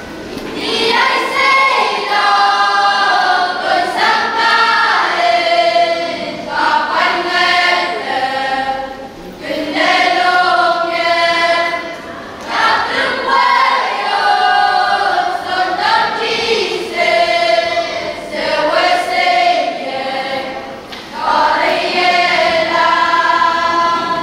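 A school choir of boys and girls singing together in long phrases, with short breaks between them.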